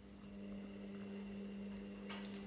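A faint, steady hum of constant pitch that starts abruptly, with a thin high whine above it.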